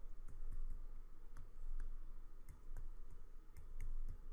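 A stylus tip tapping and clicking on a tablet surface during handwriting: a scatter of small, irregular clicks over a steady low hum.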